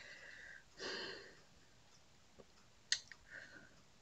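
A man's soft breathing, with one audible breath about a second in and a single sharp click near three seconds.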